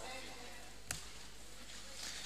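Quiet room hum with a single sharp click or knock about a second in.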